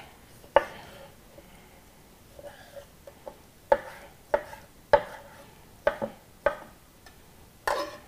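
Chef's knife chopping raw fish fillet into small cubes on a plastic cutting board: irregular sharp knocks of the blade striking the board, a few soft taps then about six louder strikes, most of them in the second half.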